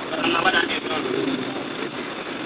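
A man's voice speaking, in a recording with the high end cut off.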